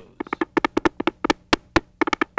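A quick, uneven run of sharp percussive taps and knocks, about eight to ten a second, some with a short hollow ring, like a news-bulletin percussion sting.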